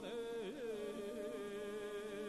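A drawn-out chanting voice holding long, slightly wavering notes and sliding between pitches: a Mongolian wrestling herald (zasuul) singing out a wrestler's title.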